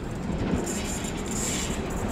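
Class 73 locomotives and test-train coaches pulling away along the track, with steady running noise of wheels on rail. A faint high whine comes in about half a second in and fades near the end.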